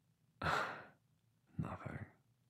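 A man sighing: a strong breathy exhale about half a second in that trails off, then a second, shorter breath near the end.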